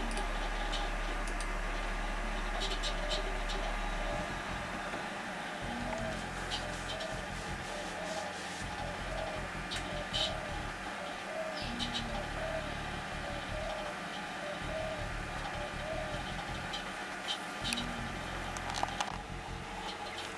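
Steady hum and whine of running computer equipment, with scattered mouse clicks, and a faint soft repeating tone about once a second.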